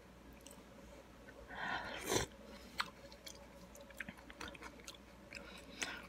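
A spoonful of instant miso ramen soup with cabbage and green onion being sipped, loudest about two seconds in, then close-up chewing with scattered small clicks.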